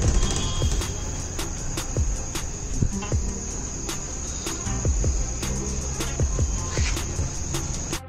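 Crickets trilling in one steady, unbroken high tone, with scattered sharp clicks and a low rumble under it.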